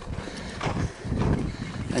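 Footsteps on a sandy dirt trail, a few uneven steps.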